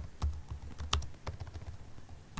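Computer keyboard keystrokes: a few scattered, irregular clicks, the sharpest about a second in.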